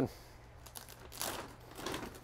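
Rustling and crinkling of a sewn-top, feed-style bag of potting soil being opened out and handled, with the louder rustle about a second in and a smaller one near the end.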